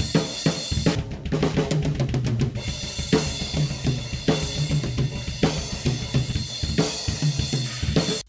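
Multitrack drum-kit recording played back from a DAW: a busy groove of kick drum, snare and cymbals. It is comped from two takes, so partway through, a section from a second overhead-mic take plays in place of the first.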